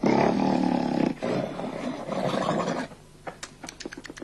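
A man's loud, rasping snoring in two long breaths, stopping about three seconds in. It is followed by a quick, irregular run of sharp clicks.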